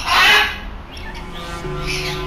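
A parrot gives one loud, short call right at the start. After that, background music with a steady held note comes in about a second and a half in.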